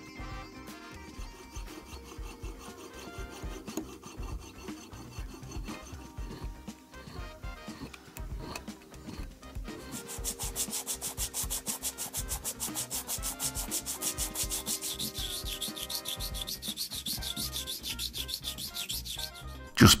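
A sterling silver casting being filed by hand with a metal file. The strokes are soft at first, then from about halfway become louder, quicker back-and-forth rasping, several strokes a second.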